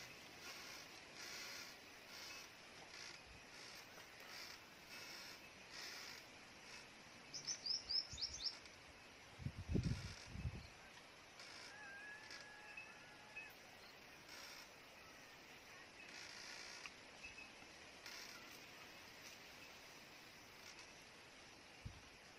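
Faint outdoor ambience with a quick run of high bird chirps about seven seconds in, a few low thumps around ten seconds, and a faint held whistle-like call a little later.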